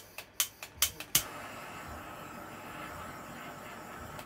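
Handheld gas torch: several sharp igniter clicks in the first second, then the flame catches and hisses steadily, used to pop bubbles in epoxy resin.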